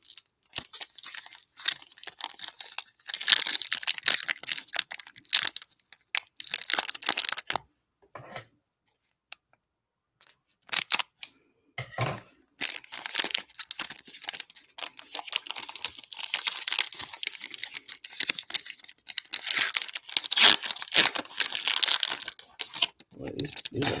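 Foil trading-card pack wrapper being torn open and crinkled by hand. The crackling comes in two long stretches, with a few seconds of quiet between them in the middle.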